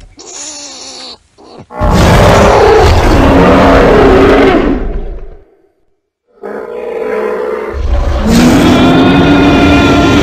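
Dinosaur roar sound effects: a long, loud roar that starts about two seconds in and lasts some three seconds, a short silent break, then a growl that builds into a second loud roar near the end.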